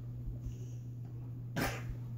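A steady low hum, with a single short, sharp breath about one and a half seconds in.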